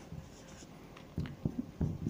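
Marker writing on a whiteboard: a quiet start, then a few short strokes and taps in the second half.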